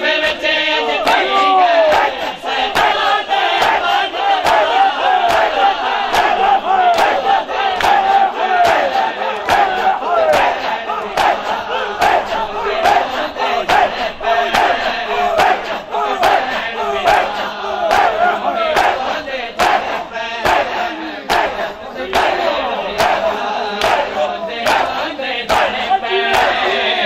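A crowd of men shouting together over a steady rhythm of sharp slaps: matam, open hands beating bare chests in unison.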